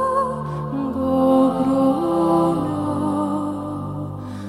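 Background music: a slow melody of long held notes that slide between pitches, over sustained low tones.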